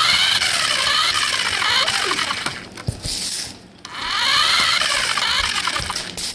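Electric motor and gears of a toy remote-control car whining as it drives, the pitch rising and falling as it speeds up and slows down. It runs in two spells, dropping away briefly about three seconds in, with a short knock near that gap.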